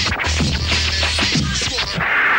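Vinyl record scratched by hand on a turntable, short back-and-forth strokes cut over a hip-hop beat with a held bass note.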